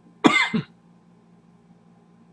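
A man coughs once, a short, loud burst in two quick parts lasting under half a second.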